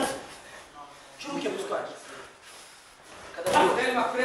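Indistinct men's voices talking, quieter in the middle and louder again near the end.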